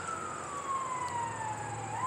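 Emergency vehicle siren wailing: one long tone sliding slowly down in pitch, then turning to rise again at the end.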